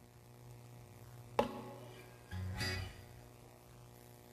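Acoustic guitar being handled and readied between songs: a sharp click about one and a half seconds in, with the strings ringing after it, then a short soft strum or plucked chord about a second later.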